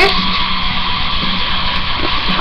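Steady hiss with a faint low hum under it: the background noise of a webcam microphone, with no distinct handling sounds.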